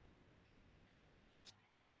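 Near silence: faint room tone, with one short faint click about one and a half seconds in.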